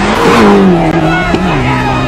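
Rally car engine at high revs passing close by on a dirt road, its pitch dropping as it goes past and then holding lower as it pulls away.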